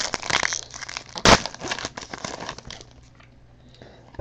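Trading-card pack wrapper being handled and torn open: crinkling and crackling, with one loud sharp rip about a second in, dying away to near quiet in the last second.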